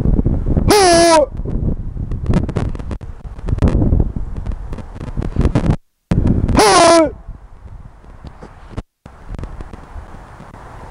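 A man's loud shout, a martial-arts kiai, given twice about six seconds apart; each is short and falls in pitch. Wind buffets the microphone throughout.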